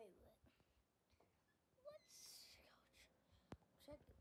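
Near silence, with a brief faint breathy whisper about two seconds in.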